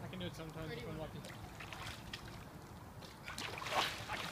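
A splash of pool water as a swimmer lunges through it, building up near the end.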